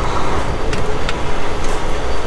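Semi truck's diesel engine running as the truck pulls away from the fuel pump, heard from inside the cab as a steady low rumble. Two faint ticks come about a second in.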